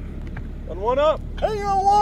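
A man's raised voice calling out twice over a steady low hum: a short rising-and-falling call, then a longer call held at one pitch for about half a second.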